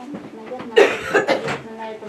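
A person coughing: two harsh coughs about a second in.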